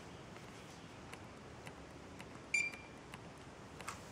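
A single short electronic beep about two and a half seconds in, with a few faint ticks scattered around it over low room hiss.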